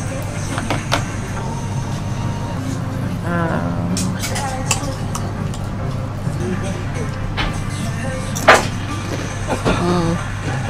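A few sharp clicks of wooden chopsticks working at crisp deep-fried snapper bones on a wooden plate, the loudest near the end, over a busy restaurant background of music and voices.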